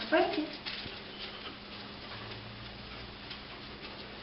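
A short vocal sound in the first half-second, then faint, scattered light ticks and rustling as the leashed dog and its handler move about a carpeted room.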